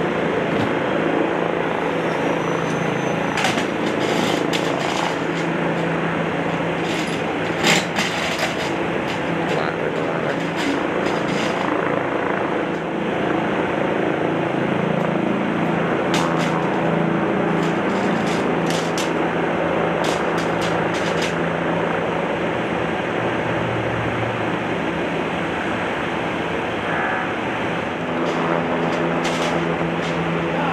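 A heavy tow truck's engine running steadily while its crane boom lifts a car in slings. Scattered sharp clicks and knocks sound over it, the loudest about eight seconds in and several more in a cluster a little past the middle.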